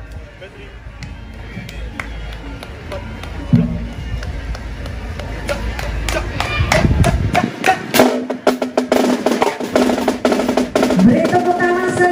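Marching band drum line playing a drum roll that swells louder over several seconds, then breaking into dense, rapid drum and cymbal hits with sustained brass chords over them.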